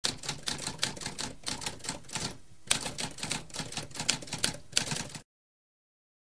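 Typewriter keys struck in a rapid run of sharp clicks, with a short pause about two and a half seconds in; the typing stops a little after five seconds in.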